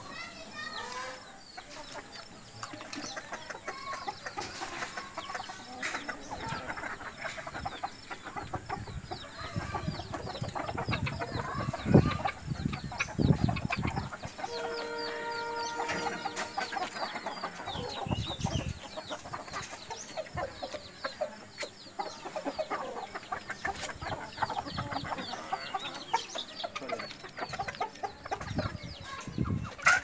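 Backyard chickens clucking and calling, with one long call held at an even pitch about halfway through. A few low thumps come just before it, the loudest about twelve seconds in.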